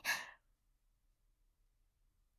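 A short, soft breath from the female voice actor just after a spoken line, then near silence.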